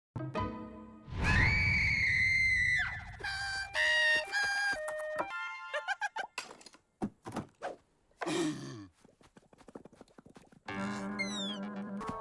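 Cartoon soundtrack of comic music cues and sound effects: a long, high held cry near the start, a quick run of musical notes, a few thunks, and a falling glide, then a music cue comes in near the end.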